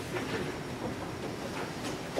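Faint, irregular footsteps of a person walking away from a podium, with low room noise.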